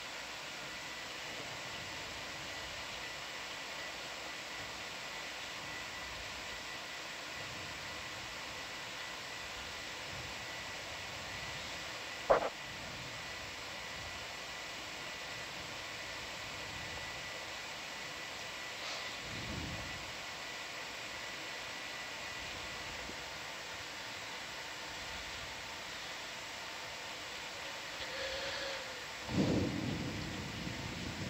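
Steady background hiss with a faint constant high tone, broken by a single sharp click about twelve seconds in and a short low thump near the end.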